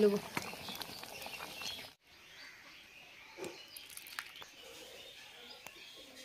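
Faint clinks of a metal spatula stirring dal in the pan, cut off abruptly about two seconds in. After that, quiet outdoor background with faint bird chirps.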